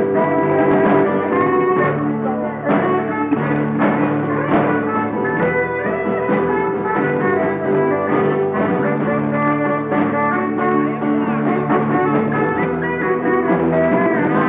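Live jazz jam: a saxophone plays a melody line over a strummed acoustic guitar and an electric guitar.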